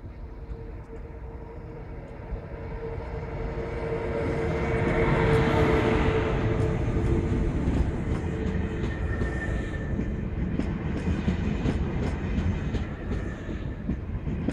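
An ICE 1 high-speed train rolls slowly past close by. Its steady hum swells to its loudest about five or six seconds in, then the coaches pass with a run of sharp wheel clicks over the rail joints.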